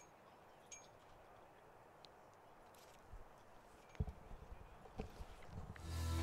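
Near silence: faint outdoor ambience with a few faint knocks and clicks, more of them in the second half, and music starting to fade in at the very end.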